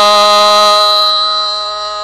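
Harmonium holding one steady note, with no waver in pitch, growing somewhat quieter after about a second.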